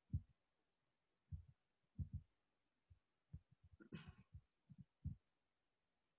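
Near silence broken by faint, short low thumps every second or so, with a brief soft rustle about four seconds in: handling bumps on the computer while a screen share is set up.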